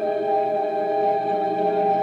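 Electric organ holding a steady, sustained chord drone, several tones held without change, opening a slow psychedelic rock improvisation.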